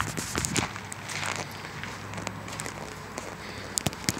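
Footsteps of a person walking across a concrete porch, over low background noise, with a sharper click near the end.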